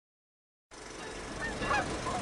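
Geese honking, a few short falling calls starting about a second and a half in, over a steady hiss after a silent start.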